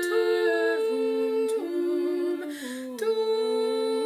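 Unaccompanied four-part singing, a woman's and a man's voices layered into sustained chords that move step by step. There is a brief break with a breath about two and a half seconds in.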